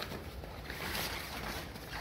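Thin plastic washing-machine cover rustling and crinkling as it is handled, loudest about a second in.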